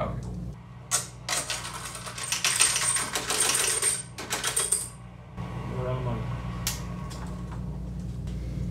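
Loose silver coins clinking and jingling together as they are handled, a dense clatter from about a second in to about five seconds in.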